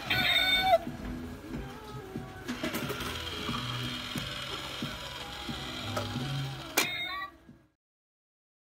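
Small motor and gears whirring inside a novelty cat coin bank as the lid lifts and the cat peeks out, with a short jingle at the start. The sound fades out shortly before the end.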